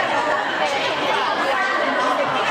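Chatter of many voices talking over one another, steady throughout.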